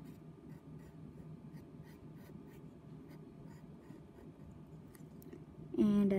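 Pencil scratching faintly on paper in many short strokes as small circles are drawn, over a low steady hum.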